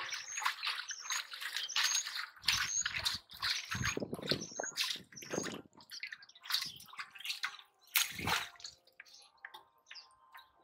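Water sloshing and splashing in a steel basin in short irregular bursts as hands work in it, with small birds chirping.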